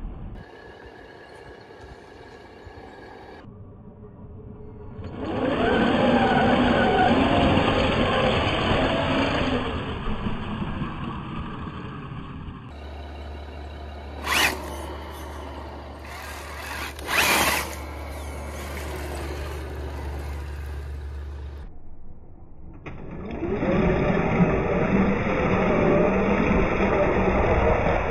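Traxxas TRX6 six-wheeled RC truck on small paddle tires driving through mud: electric drivetrain running with the tires churning and slapping wet mud, in several short cuts. Two short loud bursts come in the middle.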